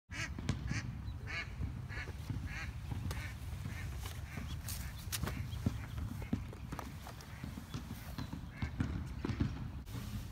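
A bird calling outdoors in short repeated calls, about two a second for the first few seconds and sparser after, over a steady low rumble of wind on the microphone, with a few scattered knocks.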